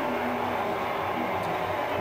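Steady background hiss with a faint low hum and no distinct events.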